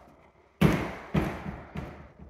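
Footsteps on vinyl plank flooring: a near-silent start, then a sharp thud about half a second in followed by a few lighter steps about half a second apart.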